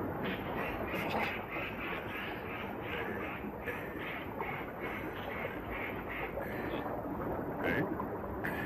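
A fast-flowing river rushing steadily, overlaid by a rhythmic series of short, nasal vocal noises, about three a second, from a man pushing on a lying body.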